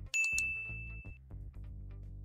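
Two quick mouse clicks and a single bell ding, the sound effect of an animated subscribe button, over steady background music.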